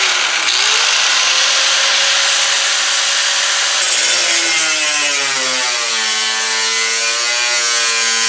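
A power tool running continuously with a loud, rough cutting noise, its motor pitch wavering and dropping in steps in the second half as it loads.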